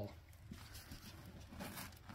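Faint handling noise: soft rustling and a few light clicks as a hand reaches for and touches a plastic hydroponic net cup, a little louder near the end.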